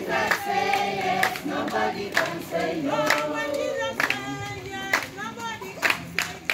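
A group of people singing a song together, with hand claps keeping the beat about once a second.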